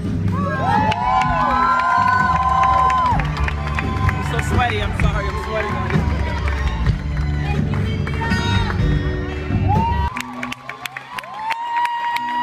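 Live band music with an excited concert crowd cheering and screaming close by, several high held screams overlapping. About ten seconds in, the band's bass drops out, leaving the screams and cheers.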